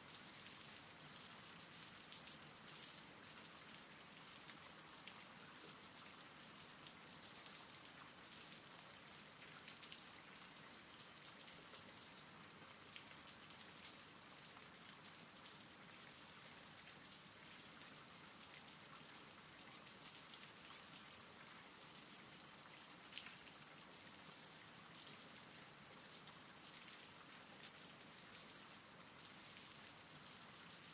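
Quiet, steady rainfall, with scattered drops ticking through it.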